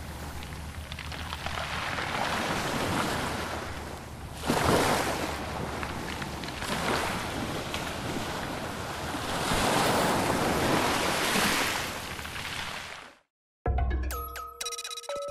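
Ocean surf: waves breaking and washing up a beach in a steady rush. It swells sharply about four and a half seconds in and again a little past the middle, then cuts off suddenly near the end.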